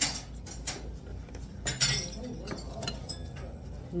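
Metal spoon and stainless-steel bowls clinking during a meal: a few sharp clinks, the loudest at the start and just under two seconds in.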